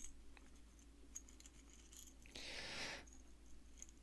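Faint light metallic clinks of a small metal keyring and its charm being handled, with a brief rustle about halfway through.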